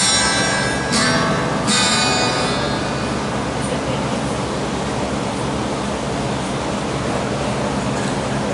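Three guitar chords strummed about a second apart, each ringing out and fading, followed by a steady hiss and low hum from the amplified band setup.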